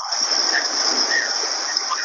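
Recorded sound of the Miss Tilly shrimp boat's half-hourly water eruption at Disney's Typhoon Lagoon: a steady rush of water and noise that starts abruptly and holds level.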